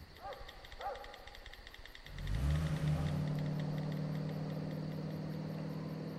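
Crickets chirping at night, with two short squeaks within the first second. About two seconds in, a car engine comes in suddenly and holds a low, steady hum.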